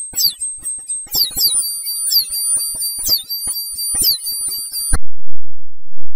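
Heavily effects-distorted meme audio: high, falling squeals about once a second over steady piercing tones and rapid clicking, alarm-like. About five seconds in it cuts abruptly to a louder, muffled low rumble with the treble stripped away.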